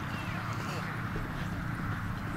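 A horse cantering on a sand arena, its hoofbeats soft and muffled, over a steady low outdoor rumble and faint indistinct voices.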